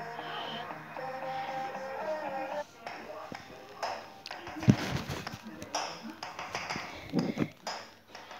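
Music with held melody notes, heard faintly through Bluetooth headphones held up to the microphone; it cuts off about two and a half seconds in. Scattered taps and handling clicks follow.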